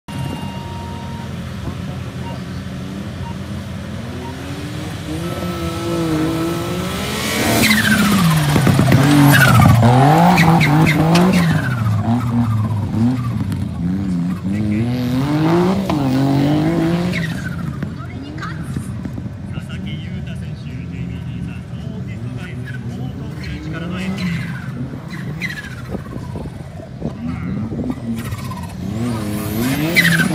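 Suzuki Jimny off-roader's engine revving up and dropping back again and again as it drives a dirt competition course. It is loudest about a third of the way in, then runs quieter with further rises and falls.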